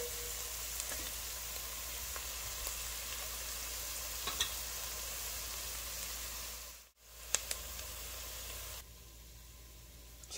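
Diced carrots and onion sweating in olive oil in a pot: a steady, gentle sizzle, stirred with a wooden spoon at first. The sizzle cuts out briefly about seven seconds in, then comes back quieter.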